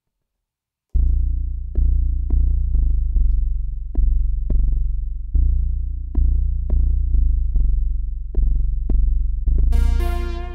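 Deep synth bass line from Akai's Jura plug-in instrument, starting about a second in and playing a pulsing pattern of plucked notes that each die away. A brighter synth layer joins just before the end.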